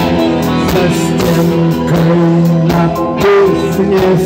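Live rock band playing loudly and steadily: guitar over a drum-kit beat.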